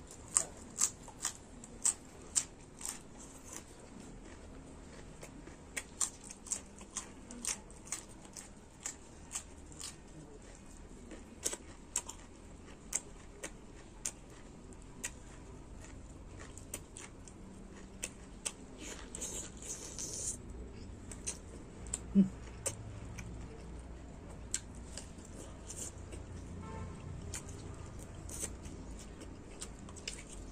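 Close-miked eating sounds: chewing and lip-smacking that make a run of irregular sharp clicks, densest in the first few seconds while a piece of winged bean is chewed. A short hiss comes about two-thirds of the way through.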